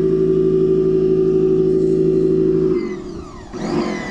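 Pressure washer running with a steady hum while blasting into a pumpkin, then cutting off nearly three seconds in. A short rush of noise follows near the end.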